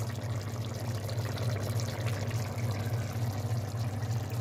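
Chickpea curry gravy simmering in a pot, with a steady soft crackle of small bubbles popping, over a steady low hum.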